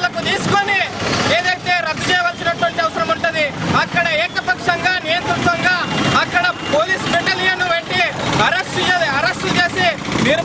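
A man speaking loudly and without pause in Telugu, giving a protest speech in a raised voice.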